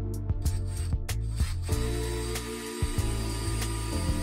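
Soft guitar background music over a cordless drill running steadily from about a second and a half in. The drill is boring through a caster's mounting plate into the Kallax top, and here the bit meets solid wood rather than the hollow core.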